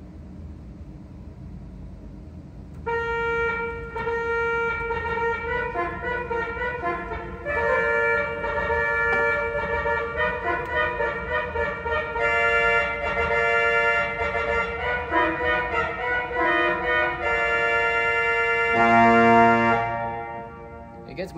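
Tromba reed stop of a 1926 Estey pipe organ (Opus 2491) played in chords, a horn-like tone starting about three seconds in, changing notes throughout and ending with a louder, lower chord.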